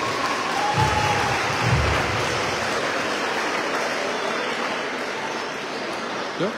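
An audience applauding steadily, with a couple of low thumps about one and two seconds in.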